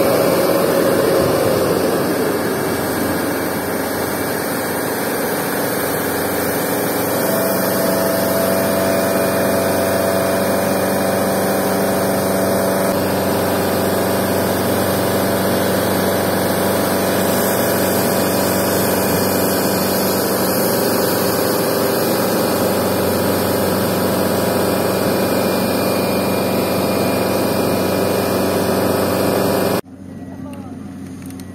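Fire truck's engine-driven pump running steadily under load, with the even rush of its roof nozzle spraying a long jet of liquid.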